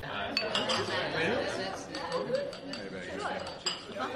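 Dinner-party ambience: a crowd of people chattering, with several sharp clinks of glasses and cutlery against dishes.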